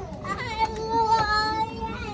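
A single high voice singing, gliding up into one long held note that starts about a third of a second in.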